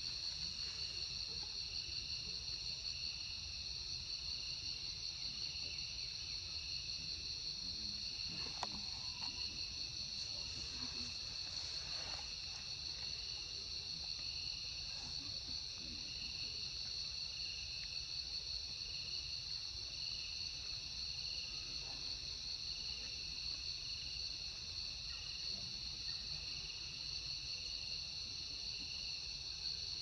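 Steady chorus of insects: several high-pitched trills ringing together without a break, the lowest one pulsing slightly. A faint low rumble lies beneath, with a few faint ticks about a third of the way through.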